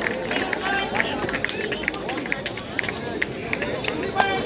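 Crowd of spectators at a kabaddi match shouting and talking all at once, many voices overlapping, with scattered sharp clicks throughout.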